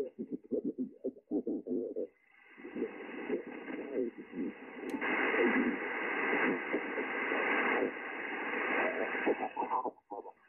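A distant amateur station talking on single sideband, heard through the Yaesu FTDX10 HF transceiver's speaker. The voice is muffled and cut off above about 3 kHz. Band hiss comes up about two seconds in and grows louder from about five seconds.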